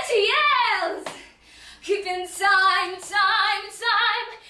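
A teenage girl's voice in a wordless, dramatic vocal outburst: a cry that sweeps up and down in the first second, then after a short gap a long, held sung tone.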